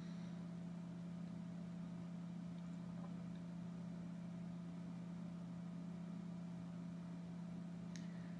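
A steady, faint low hum, the constant background noise of the recording, with nothing else sounding over it.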